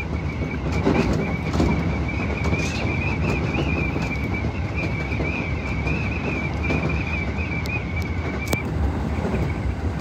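Electric commuter train running at speed, heard from the front of the train: a steady low rumble of wheels on rail, with a high, slightly wavering whine held over it. A couple of sharp ticks come near the end.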